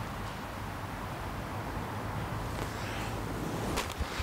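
Steady low outdoor background rumble, with a few faint ticks near the end.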